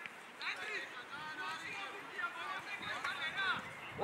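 Several high-pitched children's voices calling and shouting across a football pitch, overlapping and fairly distant.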